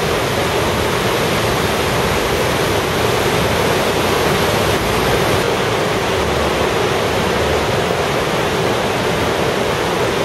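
Whitewater rapids of the Coquihalla River rushing through a narrow rock canyon: a loud, steady rush of water that holds even throughout.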